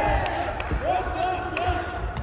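Amateur boxing bout: shoes squeaking on the ring canvas with dull thuds of footwork and punches, under shouting voices.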